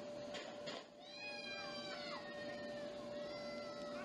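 A person's long, high-pitched wordless yell about a second in, held and then dropping in pitch as it ends, followed by a shorter, fainter one near the end. A steady high hum runs underneath throughout.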